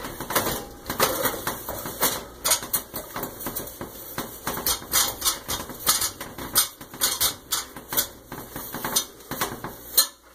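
A microfiber cloth rubbed by hand over a polished stovetop to wipe off the polish, with a run of irregular light clicks and knocks, a few each second.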